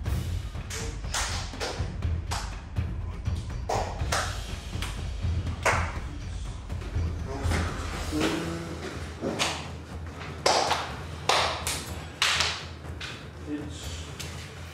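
Background music with a steady low beat, with sharp thuds at irregular intervals, about one a second.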